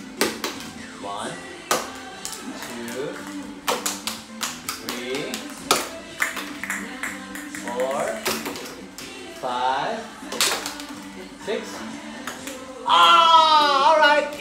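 Small plastic balls thrown one after another, tapping and clattering as they bounce on a hardwood floor and knock into upright cylinder targets, at irregular intervals; short bits of voices come between throws, and a louder spell of voices near the end.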